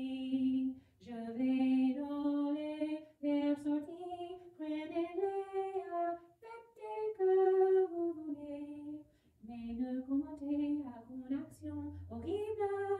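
A woman singing solo in French: a slow melody of long held notes, sung in phrases with short breaks between them.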